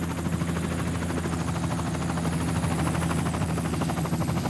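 Helicopter in flight: the main rotor makes a rapid, even chop over a steady engine drone, with a thin high whine above it.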